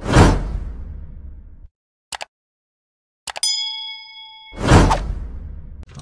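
Edited intro sound effects: a whoosh with a deep boom, two quick clicks, a bright ding that rings for about a second, then another whoosh with a deep boom.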